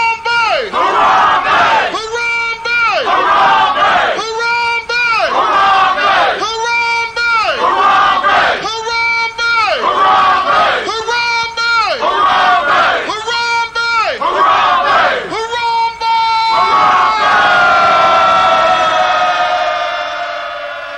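A crowd of voices shouting one short call in unison, over and over about every two seconds, then holding a final long call that slowly falls in pitch and fades away.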